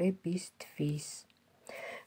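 Speech only: a voice talking quietly in short phrases, with a brief pause a little past the middle.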